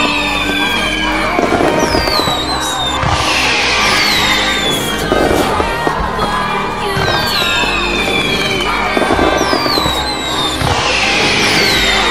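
A music track mixed with fireworks sound effects: whistles falling in pitch and crackling bursts, repeating in a loop about every eight seconds.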